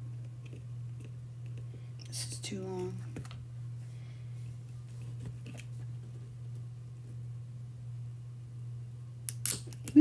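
Small tool clicks, then near the end a sharp crunch as the jaws of jewelry pliers break through the glass of a rhinestone.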